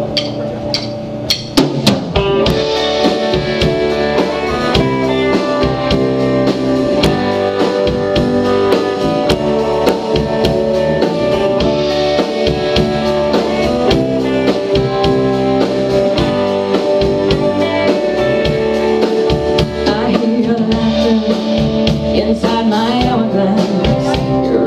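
Live rock band playing the opening of a song on drum kit and electric guitars. A few separate drum hits come first, then the full band comes in about two seconds in and holds a steady beat.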